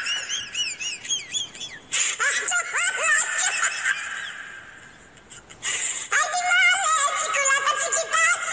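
High-pitched, squeaky voice-like sounds with quick rising-and-falling pitch swoops, fading out, then music with held notes cutting in about six seconds in.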